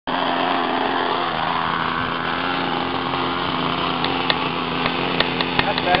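Small engine of a custom RC airboat running steadily. From about four seconds in, a series of sharp clicks rides over it.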